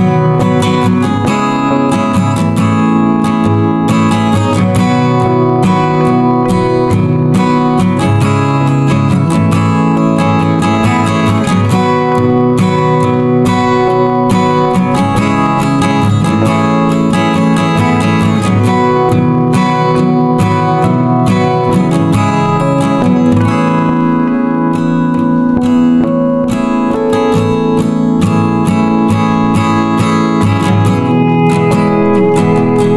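Acoustic guitar strummed and picked, playing chords.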